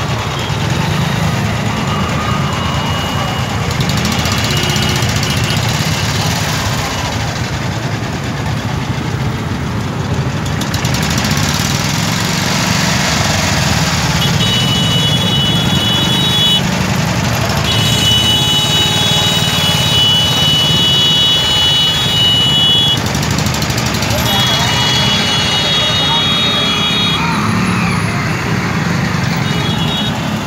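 Traffic jam of idling motorcycles, CNG autorickshaws and a small truck, a steady low engine rumble with voices around it. In the second half a high, steady tone sounds in three long stretches of a few seconds each.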